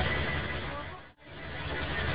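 Cabin sound of a Mercedes-Benz OHL1316 city bus, its rear-mounted OM 366 six-cylinder diesel running, heard through a phone's microphone. The sound fades down to near silence just past a second in and straight back up, an edit join between two recordings.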